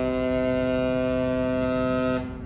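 Regal Princess's musical ship's horn sounding one long, steady held note of its tune.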